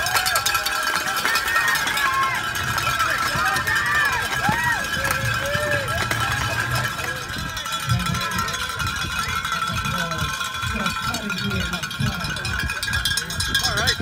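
Spectators' cowbells ringing rapidly and continuously, with scattered shouts from the crowd.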